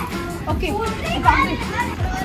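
Several children talking and calling out at once, with music playing underneath.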